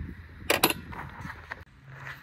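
Two sharp mechanical clicks in quick succession about half a second in, over faint low background noise.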